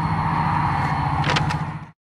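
A steady, low engine hum in the outdoor background, with a brief high sound about a second and a half in. It cuts off abruptly to dead silence just before the end.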